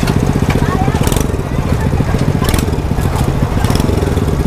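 Small engine of a homemade scrap-built mini car idling with a fast, even putter, with a few sharp clicks and rattles over it.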